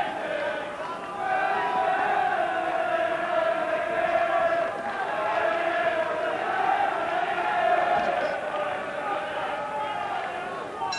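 Arena crowd at a boxing bout, a sustained mass of chanting and shouting voices that rises and falls without a break.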